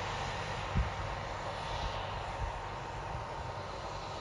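Case IH Quadtrac tracked tractor running steadily as it pulls a seed drill, a continuous engine drone, with one low thump just under a second in.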